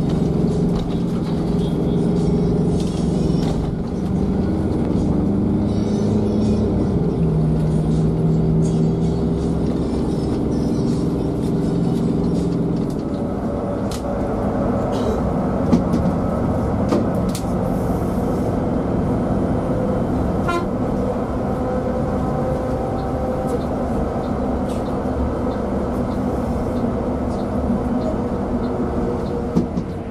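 Steady cabin noise from inside a moving Mercedes-Benz OC 500 RF double-decker coach, with held tones that change pitch a few times, and background music over it.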